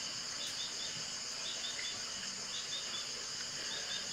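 Insects trilling steadily, high-pitched, with a short chirp repeating in quick runs about once a second.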